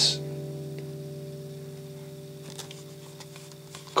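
Fender Redondo steel-string acoustic guitar's strings ringing out after a strum, slowly fading, with a few faint clicks near the end.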